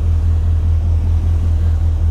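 2008 GMC Sierra 1500's V8 with aftermarket shorty headers idling: a steady deep exhaust rumble with an even pulse.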